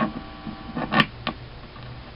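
Small 10-watt guitar amplifier: a sharp pop about a second in, then a steady low mains hum as it sits powered with the guitar connected.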